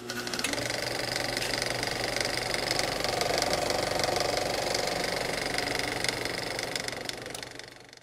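A steady, rapid mechanical rattle like a small motor running, growing louder toward the middle and fading out near the end.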